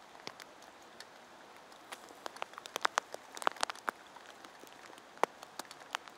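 Light rain at night, a faint steady hiss with individual drops tapping onto a wet surface, coming thicker in the middle and with one sharper drop about five seconds in.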